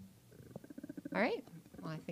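A person's voice: a low, creaky pulsing murmur, then short vocal sounds that rise and fall in pitch about a second in.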